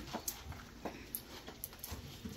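Quiet background with a few faint, scattered clicks.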